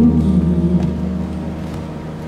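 A low sustained chord from the fusion gugak band's accompaniment, fading steadily between pansori phrases. The singer's last held note tails off within the first second.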